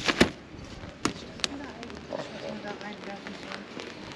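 A black umbrella being opened and handled: sharp snaps and clicks of the canopy and ribs, two loud ones right at the start and two more about a second later.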